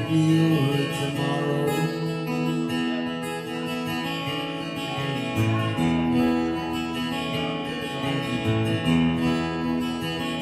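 Acoustic guitar playing chords in an instrumental passage between sung lines of a live song, with no singing.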